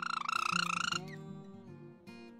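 A loud, buzzy, fast-pulsing tone lasting about a second at the start, over acoustic guitar background music.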